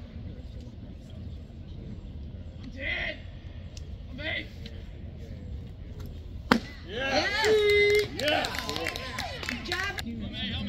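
A pitched baseball popping into the catcher's mitt with one sharp crack about six and a half seconds in, followed by several spectators shouting and cheering. A couple of short shouts come earlier, before the pitch.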